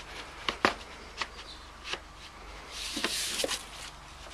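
Handling noise from fitting a plastic vacuum tube onto a Stihl handheld blower-vac: a few sharp plastic clicks and knocks, and a short scraping rustle about three seconds in.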